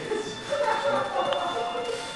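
Music starting up with several steady, held notes about half a second in, over low audience chatter.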